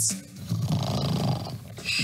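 A man snoring: one long snore about half a second in, then a higher, hissing breath near the end.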